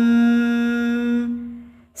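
A chanting voice holds the last syllable of a Sanskrit stotram line on one steady note, then fades away in the last half second.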